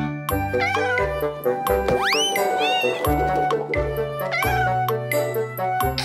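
Instrumental children's song music with a cartoon kitten meowing several times over it, one long rising meow about two seconds in.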